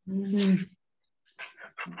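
A person's voice holding one drawn-out, steady-pitched hesitation sound for under a second, then a few quick syllables of speech near the end.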